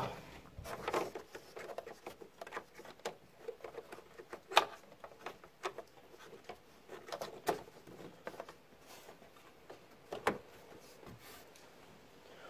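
Scattered light clicks, knocks and rustles of hands handling plastic grille trim and sensor wiring under a car, close to the microphone, with the sharpest knock about four and a half seconds in.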